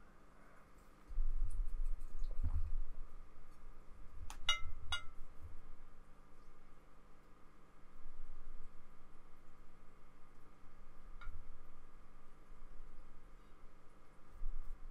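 Quiet handling of painting things at a desk: low dull thumps and bumps, with three quick light clinks about four to five seconds in and one faint click later.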